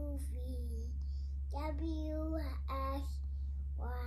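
A young girl singing in short phrases of held, pitched notes with brief pauses between them, over a steady low hum.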